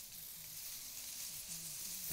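A steady high hiss of background noise, with faint low voices murmuring in the distance.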